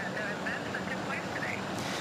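Steady outdoor street noise from an open microphone: an even rumble with a low hum running through it, and faint voices.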